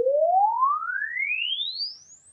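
Logarithmic sine sweep played through a guitar speaker in a custom-built wooden cabinet with few parallel walls and acoustic wool inside, for a frequency-response measurement. A single pure tone rises steadily in pitch from a mid hum to a high whistle and grows fainter near the end.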